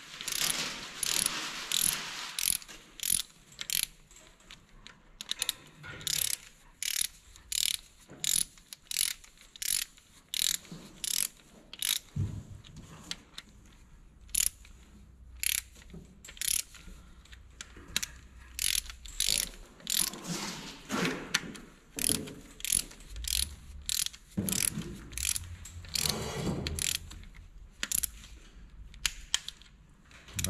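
Hand ratchet wrench clicking in short runs with brief pauses as the rocker-arm shaft bolts of a VW 1.9/2.0 TDI pump-injector diesel are tightened a little at a time, evenly, towards 20 Nm.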